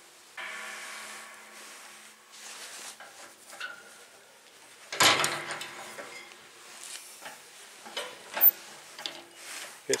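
A ratchet wrench and socket unscrewing a seized brass valve from the threaded fitting of a steel propane tank: metal creaking and scraping as the threads turn, loudest about halfway through, with a few sharp clicks near the end. The valve has been broken free and is now being turned out by hand.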